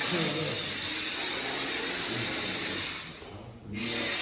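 A steady rushing hiss, like air blowing, that stops about three seconds in, with faint voices underneath.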